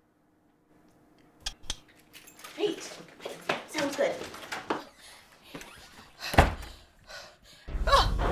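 A scuffle in a small room: a few light clicks, then short strained vocal sounds, a single loud thump about six seconds in, and a woman starting to scream near the end.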